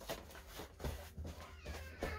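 Quick, evenly repeating footfalls and shuffling of a child spinning around in place, about three steps a second, with a brief high gliding vocal sound near the end.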